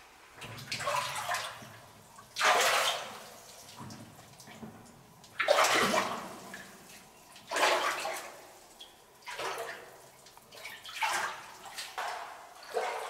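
Feet wading through shallow water: about six separate splashes, one every second or two, each a sudden slosh that dies away.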